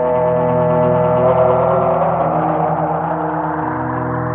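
Layered ambient loop playing through a Strymon Volante sound-on-sound tape looper: many sustained tones ring over each other, echoing. A grainy, smeared wash swells up in the middle of the phrase and then fades back under the held notes.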